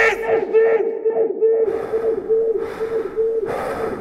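A crowd of voices yelling battle cries over a steady pulsing tone, with washes of hiss about once a second from midway: a dramatic battle sound effect.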